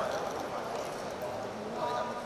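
Indistinct background voices, several people talking at once.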